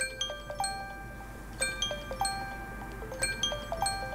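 A soft melody of bell-like struck notes, marimba or chime in character, with the same short ringing phrase returning about every second and a half.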